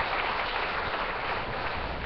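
Audience applauding, a steady patter of clapping that slowly tapers off.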